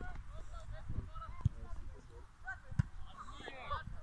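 Distant shouts and calls of young football players across the pitch, short and scattered, over a low rumble of wind on the microphone. A couple of sharp thuds stand out about a second and a half in and near three seconds.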